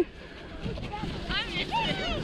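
Children's voices on the hill, with a few high-pitched calls in the second half, over a steady rumble of wind on the microphone.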